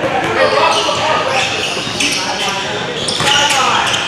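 Basketball game sounds in a large gym: several indistinct voices of players and onlookers calling out over one another, with a basketball bouncing on the hardwood court.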